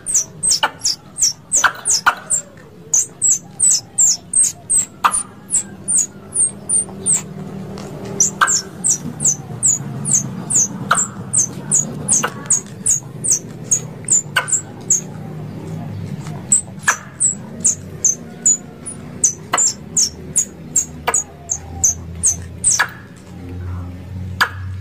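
Plantain squirrel (coconut squirrel) calling: long runs of short, sharp, high chirps, each dropping in pitch, about three a second, with a couple of brief pauses.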